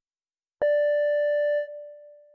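An audio guide's end-of-track signal: a single pitched tone that starts suddenly about half a second in, holds steady for about a second, then drops away and fades. It is the cue to pause the player and move to the next location.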